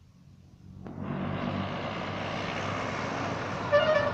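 A bus's engine and tyres rising suddenly about a second in and running loud and steady as it passes close by. A short horn toot sounds near the end.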